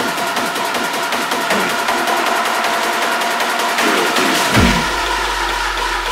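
Hard techno in a breakdown: the kick drum drops out while a held synth chord and rapid high percussion carry on. Near the end a falling pitch sweep drops into a deep, sustained sub-bass tone.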